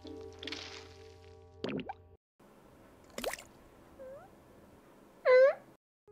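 Anime soundtrack: a held musical chord that cuts off about two seconds in, a few short cartoon sound effects including a quick rising sweep, and near the end a brief, loud, high-pitched squeal.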